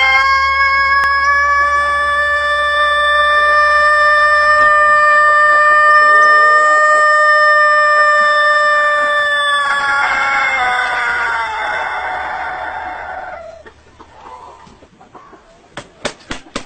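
A rooster crowing in one extremely long, steady call that holds its pitch for about ten seconds. It then turns rough and falls in pitch, fading out about thirteen seconds in.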